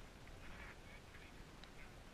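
Near silence with a few faint, short bird calls.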